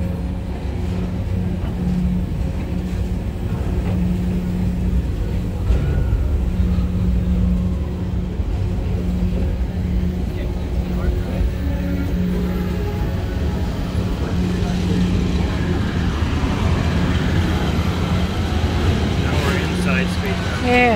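PeopleMover ride car running along its track: a steady low rumble with a hum that swells and fades every second or two.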